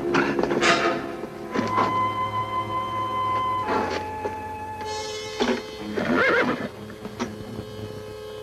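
A horse whinnies about six seconds in, with shorter horse noises earlier, over background music of long held notes.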